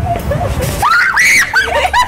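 A woman screaming in fright, a loud high shriek that rises and falls about a second in, followed by shorter high-pitched cries.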